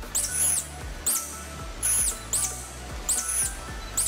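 A series of short, very high-pitched animal squeaks, six or so spread across the few seconds, over background music.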